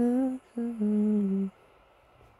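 A man humming a tune with his mouth closed: a held note, a short break, then a few lower held notes that stop about halfway through.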